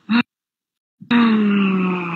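A woman's long, drawn-out vocal groan of hesitation, an 'uhhh' held for over a second with its pitch sinking slowly, as she gropes for a word. It is preceded by a brief clipped syllable.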